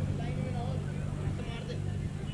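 Distant voices of cricket players calling and shouting across an open ground over a steady low rumble.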